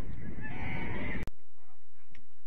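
Wind buffeting the microphone, with a call over it in the second half. The sound cuts off abruptly a little over a second in, leaving much quieter open air.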